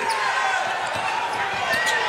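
A basketball being dribbled on a hardwood court, bouncing repeatedly, with voices in the background.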